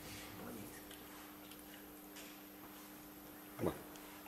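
Quiet room with a faint steady hum; near the end a single short voice-like sound that falls in pitch, a brief grunt or murmur from a person.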